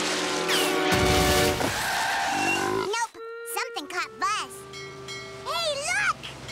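Cartoon soundtrack: background music with a loud noisy burst about a second in, a falling slide, and wordless vocal cries.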